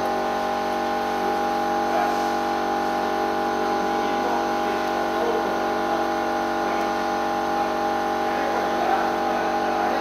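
Steady drone of a running machine, holding one even pitch with no change in speed.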